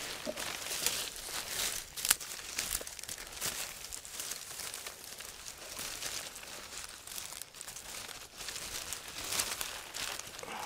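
Bundle of dry cut water reed rustling and crackling as it is handled and bound with a strip of willow bark, with many small irregular snaps from the stems.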